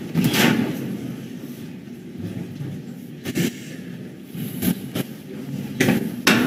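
A few sharp knocks and clatters of objects handled on a desk, over the low murmur of a room full of people moving about.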